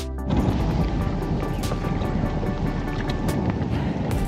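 Background music over a steady, low rumble of wind buffeting the camera microphone, which starts about a third of a second in.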